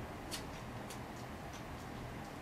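Faint crinkles and small ticks of a paper banknote being folded and pressed between the fingers, the clearest tick about a third of a second in.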